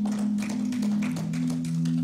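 Electric keyboard playing soft held chords as background music; the chord changes about halfway through. Scattered light clicks sit over it.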